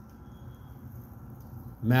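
Quiet indoor room tone, a faint steady background hum, in a pause between a man's sentences; his voice comes back just before the end.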